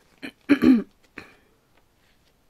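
A woman clearing her throat: one short, loud burst about half a second in, with a couple of smaller throat sounds just before and after it.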